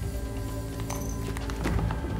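Low, steady film-score drone, with a quick run of sharp knocks and clicks about a second in.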